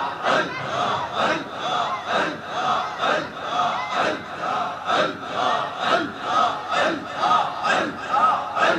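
A congregation chanting 'Allah' over and over in Sufi zikr, a steady rhythm of about two chants a second.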